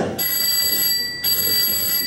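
A debate timekeeper's bell rings twice, two steady high rings of about a second each. This is the two-ring signal for the two-and-a-half-minute mark, when the speaker must stop.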